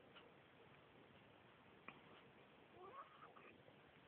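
Mostly near silence, with a small click just before the middle, then a baby's brief, faint coo that wavers up and down in pitch about three seconds in.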